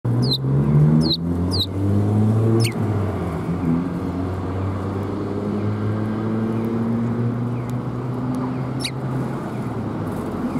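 Eurasian tree sparrows give about five short, downward chirps, four in the first three seconds and one near the end, over a louder, steady, low engine drone like a passing motor vehicle.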